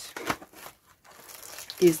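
Cardboard advent calendar door being torn open and the packing inside crinkling, with short crackles at first and a soft rustle near the end.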